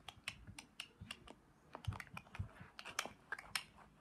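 Handling noise from tablets being moved about: an irregular run of small clicks and taps, several a second.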